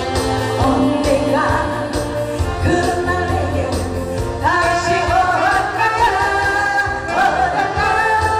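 A woman singing a Korean popular song into a microphone over musical accompaniment with a steady beat, holding long notes in the second half.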